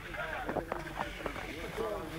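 Several people's voices calling and chattering in the background, not close to the microphone, with a few short clicks about half a second to a second in.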